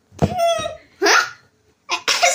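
A child's voice in two short, high-pitched vocal bursts, the first about a fifth of a second in and the second about a second in.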